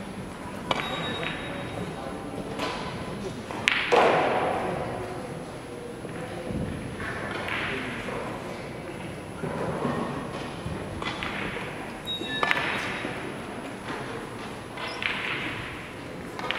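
Carom billiard balls clicking: a cue tip striking the cue ball and ball-on-ball contacts of a three-cushion shot, several sharp clicks scattered through, the loudest about four seconds in, each ringing briefly in a large hall. Fainter clicks from play at neighbouring tables come later.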